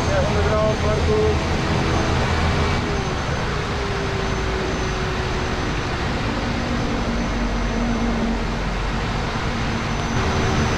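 Pilatus PC-6 Porter's engine and propeller heard from inside the cockpit in flight: a steady, dense drone. It eases slightly about three seconds in.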